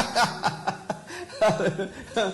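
Laughter: several short chuckles in quick succession.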